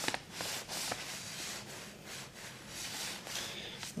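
Clothes iron's soleplate rubbing over a sheet of paper laid on copper-clad board, a soft scraping that swells and fades as the iron is pressed and moved. It is heating the board to fuse a laser-printed press-and-peel toner layout onto the copper.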